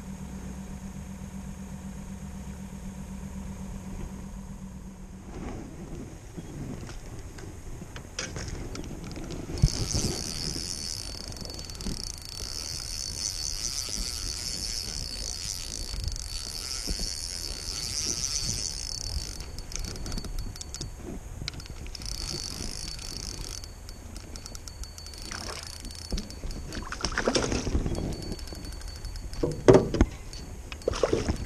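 A bow-mounted electric trolling motor hums steadily and stops about five seconds in. Then come knocks and handling sounds in an aluminium jon boat, with a spinning reel being cranked in stretches, giving a high, hissing whir.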